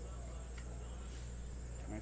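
Steady low electrical hum with a thin, high-pitched whine held on one note; no distinct handling sounds stand out.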